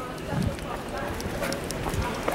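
Indistinct voices of people talking in the street, with a few scattered light taps and clicks.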